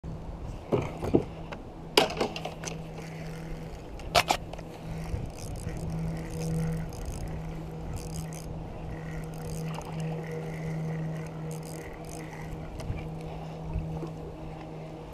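A steady low hum like a small motor running throughout, with a few sharp knocks and clicks in the first four or five seconds from rod and reel handling in a plastic kayak.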